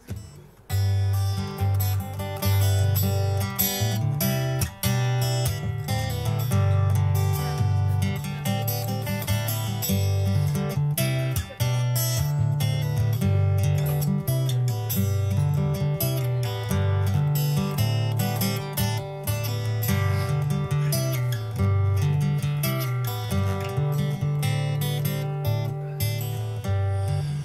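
Solo acoustic guitar strummed steadily in changing chords, with moving bass notes, as the instrumental introduction to a song. It starts about a second in after a brief hush.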